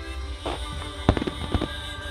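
Aerial firework shells bursting in a quick series of sharp reports, the loudest a little after a second in, over music played for the show.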